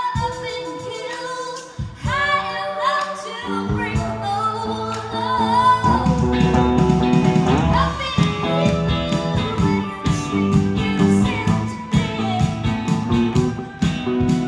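Live rock band: female lead vocal with a backing voice, joined by bass and drums about three and a half seconds in, the full band with electric guitar playing from about six seconds.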